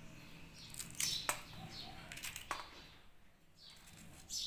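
Birds chirping faintly in short, scattered calls, with a few soft clicks in between.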